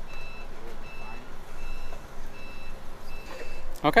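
Forklift's reversing alarm beeping steadily: a short high beep about every three-quarters of a second, six in all.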